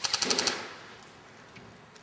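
Airsoft rifle firing a short full-auto burst of about eight rapid shots in half a second at the start.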